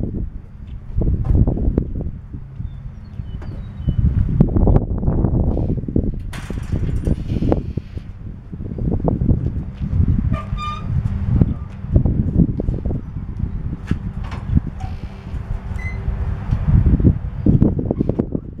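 Wind buffeting the microphone in gusts over a faint steady low hum, with scattered clicks and metallic rattles from straps and trailer hardware as a hot tub is tied down on a utility trailer.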